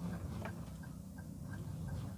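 Faint, evenly spaced short ticks, a few per second, inside a slow-moving car's cabin over a low steady hum.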